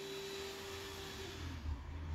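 Faint, steady rushing background noise with a thin steady tone, easing off about a second and a half in and leaving a low hum.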